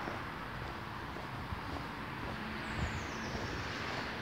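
Steady outdoor street noise, with road traffic running in the background.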